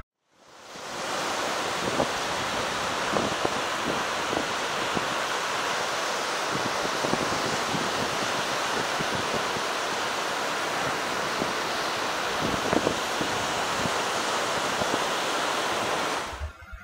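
Steady hiss of sea wash and wind along a rocky shore, fading in over the first second or so, with a few faint ticks scattered through it.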